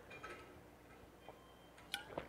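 Near silence: room tone, with a faint short click near the end.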